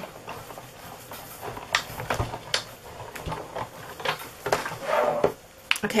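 Big Shot die-cutting machine hand-cranked, a plate sandwich with a circle die rolling through its rollers, with a low rumble and scattered clicks and knocks.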